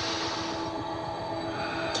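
A TV drama's magic sound effect: a steady droning hum of several held tones, with a hiss over it that fades out about half a second in.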